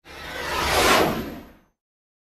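A transition whoosh sound effect that swells to a peak about a second in and fades away soon after.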